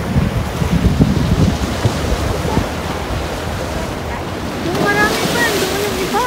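Ocean surf washing over a rock shelf, with wind buffeting the microphone, heaviest in the first two seconds. A voice comes in near the end.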